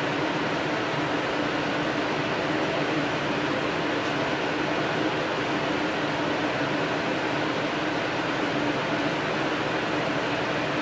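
Steady background hum and hiss of room noise that does not change, with a faint steady low tone underneath.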